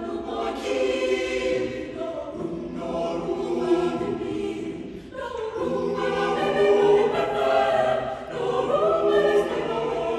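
Mixed-voice high-school choir singing a choral piece in parts, with a short break about halfway through before the voices come back fuller and louder.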